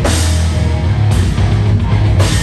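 A live heavy rock band plays loud, with a full drum kit driving it over thick bass. Cymbal crashes ring out at the start and again about a second in.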